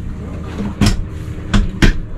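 Sofa recliner's pull-out footrest mechanism clunking as it is pulled open: a sharp knock about a second in, then two more close together near the end, over a steady low hum.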